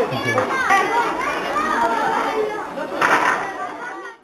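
Many children's voices chattering and calling out together, with a louder burst of voices about three seconds in.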